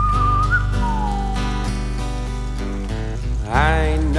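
An acoustic country song: a whistled melody over strummed acoustic guitar and bass. The whistle holds a high note, then slides down, in the first second and a half. A man's singing voice comes back in near the end.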